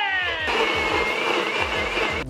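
NutriBullet personal blender running, a steady high whine with a noisy rush, over background music with a regular beat; a falling tone fades out in the first half second.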